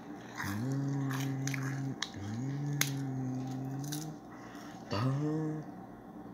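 A low voice making three long, drawn-out sounds, each sliding up at the start and then held steady, the last one shorter, with scattered sharp clicks.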